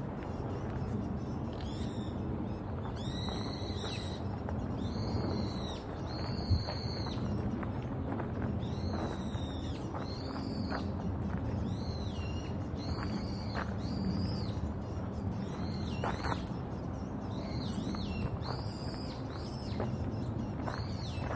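A bird calling over and over: short, high, arched notes, one every second or so, over a steady low background hum. A single sharp click about six and a half seconds in.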